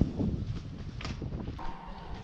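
Irregular footsteps and scuffs on a sandy, gravelly path, with a sharp knock right at the start.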